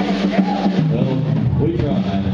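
Live band music: electric bass and guitar holding steady low notes, with a voice over it.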